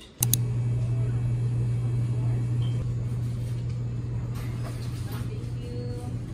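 A steady, loud low hum over a rumbling noise, starting suddenly a moment in just after two quick clicks.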